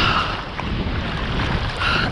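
Wind buffeting the camera microphone over the sea's waves: a steady noisy rush with an uneven low rumble.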